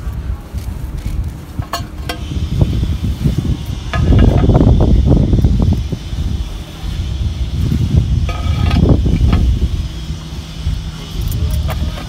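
Loose compost being raked and dumped into a ring of plastic planter tiles, heard as two loud spells of scraping and pouring with a few light clicks of tile or tool.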